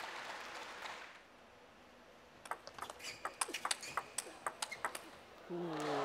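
A fast table tennis rally: the plastic ball clicks sharply off bats and table many times in quick succession for about two and a half seconds. Applause fades away at the start, and crowd noise rises again near the end.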